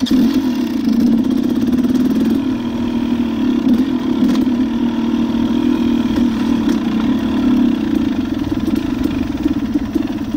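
Dirt bike engine coming in sharply at the start and then running steadily at moderate revs as the bike rides along.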